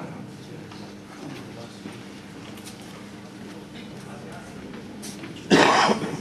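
Quiet hall room noise, then a single loud cough close to the microphone near the end.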